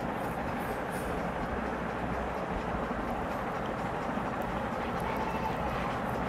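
Steady background noise with a low rumble, even throughout.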